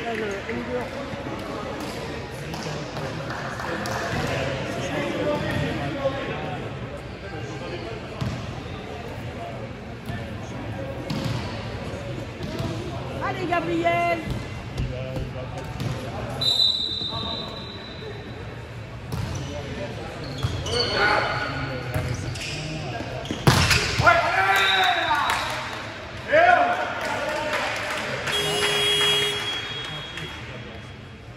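Indoor volleyball match in an echoing sports hall: players calling out and shouting, and a volleyball bouncing and being struck, with one sharp smack about 23 seconds in. A short high whistle blast sounds about 16 seconds in.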